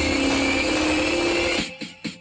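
Electronic dance music played loud through a competition sound system of stacked loudspeakers. A buzzy synth tone slowly rises in pitch, then cuts off abruptly about one and a half seconds in and gives way to choppy, stuttering beats.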